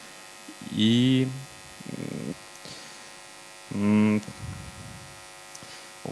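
Steady electrical mains hum through a microphone sound system, with a man's two short drawn-out 'uh' hesitation sounds into the handheld microphone, about a second in and about four seconds in.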